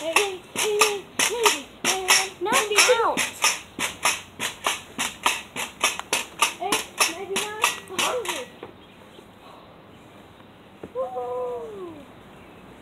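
Pogo stick bouncing on concrete: a quick, even run of sharp impacts, about three a second, that stops about eight and a half seconds in. A child's voice calls out without words between bounces and once more near the end.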